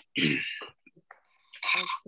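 A woman clearing her throat with a short cough, then starting to speak near the end.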